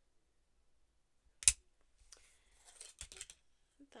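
Thin laser-cut wooden ornaments clacking as they are handled and set down on a table: one sharp click about one and a half seconds in, then lighter clicks and rustling.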